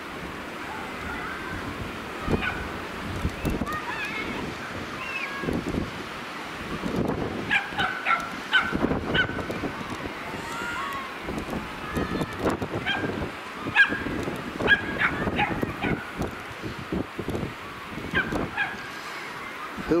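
Gulls calling over and over in short, arching cries, more of them from about seven seconds in, over a low rumbling noise.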